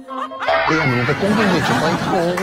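Short comedy-show title jingle: music with snickering and laughing voices. It starts after a brief drop in level about half a second in.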